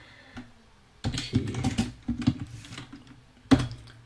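Typing on a computer keyboard: a quick run of keystrokes starting about a second in, then a single louder click near the end.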